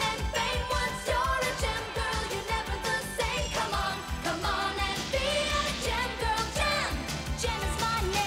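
Upbeat 1980s synth-pop theme song: a woman singing over synthesizers and a steady drum beat.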